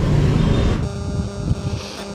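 Street traffic noise, cut off abruptly a little under a second in and replaced by a quieter, steady hum with faint sustained tones.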